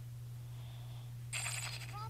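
Short electronic chime from a Cartoon Network logo intro, about one and a half seconds in, over a steady low hum.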